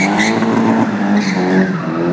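Car engine held at high revs with a steady pitch, tyres squealing as the car drifts.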